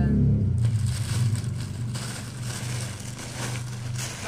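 Thin black plastic carrier bag rustling and crinkling as hands rummage through it, starting about half a second in, over a steady low hum.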